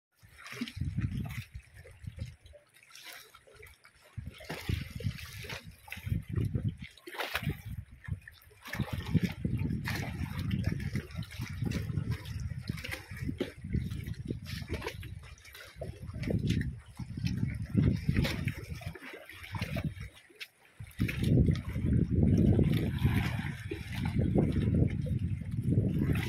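Sea water sloshing and lapping below a wooden pier, in irregular low surges that come and go every second or two.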